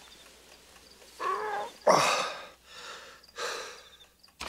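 A person breathing hard in a few heavy, gasping breaths, with a short moan about a second in, as on waking from a bad dream.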